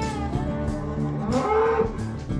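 A cow moos once, about one and a half seconds in, a short call that rises and falls in pitch, over background country music with guitar.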